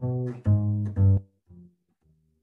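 Double bass playing a jazz walking bass line over a minor ii–V–i (Dm7♭5–G7♭9–Cm7): three firm plucked notes about half a second apart, then a faint short note about one and a half seconds in.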